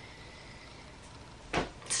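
Quiet room tone with a faint steady high hum, broken about three-quarters of the way through by a brief rush of noise just before speech resumes.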